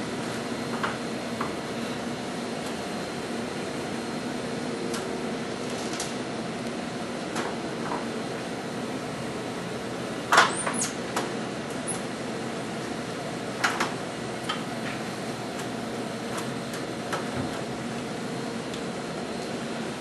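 Steady machine hum in a linear accelerator treatment room, with faint low tones, and a few sharp clicks about halfway through.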